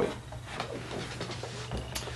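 Faint rubbing and handling noise as a finger-release pistol lockbox is lifted and set on a towel, with a small knock near the end.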